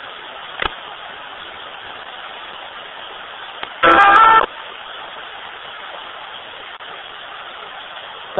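Ghost-box radio sweeping the FM band: a steady static hiss, a single click just over half a second in, and a loud half-second tonal burst of broadcast sound near the middle.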